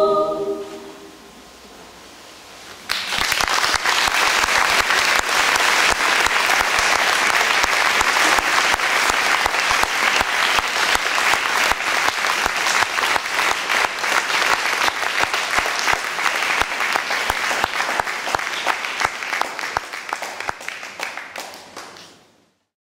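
A choir's final chord dies away in the church's echo in the first second or so. After a short pause, audience applause starts about three seconds in, keeps up steadily, and tapers off near the end.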